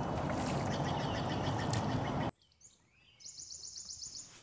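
Steady outdoor background noise that cuts off abruptly a little over two seconds in. Near the end a small bird sings a fast trill of high, evenly repeated notes.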